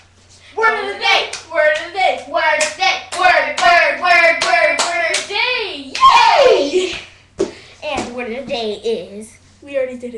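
Two girls chanting a hand-clapping rhyme together while their palms clap in a quick rhythm. About six seconds in a loud voice slides down in pitch, and the chant with claps picks up again briefly after it.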